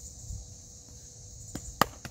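A cricket ball meets the bat in a defensive block: a faint tap, then a single sharp knock near the end. A steady high chirring of insects runs underneath.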